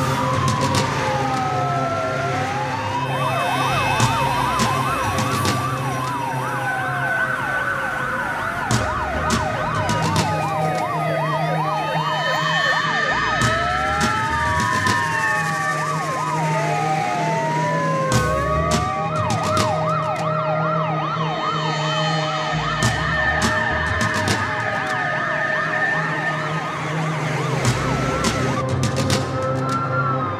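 Several fire engine sirens sounding at once, overlapping slow rising-and-falling wails with stretches of fast yelping, over a low rumble.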